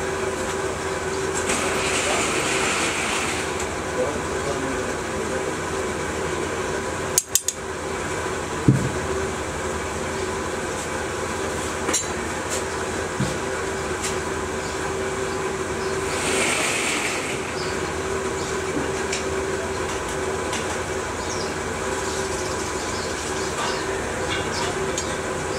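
Steady mechanical drone of a running motor or blower in a casting workshop. A few light knocks and clicks come about seven to nine seconds in and again around twelve to thirteen seconds.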